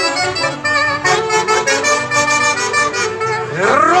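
Live Andean folk orchestra playing a huaylarsh tune with a steady beat, several melody instruments sounding together.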